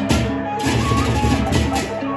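Sasak gendang beleq ensemble playing: struck gong kettles and small gongs ringing out pitched tones over fast, dense cymbal and drum strokes.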